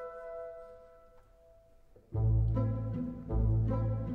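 Orchestral film-score music for strings: held notes die away to near silence, then about halfway through low strings come in loudly with chords that swell again about a second later.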